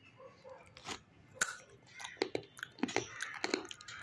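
Crunching as a rolled Doritos Dinamita tortilla chip is bitten and chewed: a dense run of crisp crackles starting about a second and a half in.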